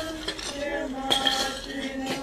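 Steel shovels striking and scraping stony soil and limestone rubble as a grave is filled by hand: two sharp, clinking strikes about a second apart.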